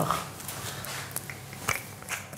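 Hand pepper mill handled over a ceramic bowl: a few light clicks, about a second in and again near the end, over a quiet steady low hum of the kitchen.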